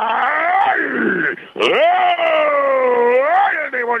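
Radio football commentator's long drawn-out goal cry ('gooool') for a penalty, held in two long breaths with a short break a little over a second in, the pitch swooping up and down. Heard as band-limited AM radio audio.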